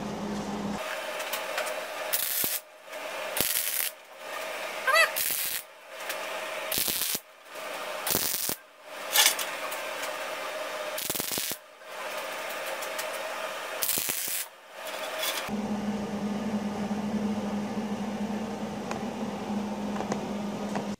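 MIG welder arc crackling in runs of a second or two broken by short pauses, welding steel rod, spattering from a bad ground connection caused by a loose bolt on the ground clamp. The crackle stops about three-quarters of the way through, leaving a steady low hum.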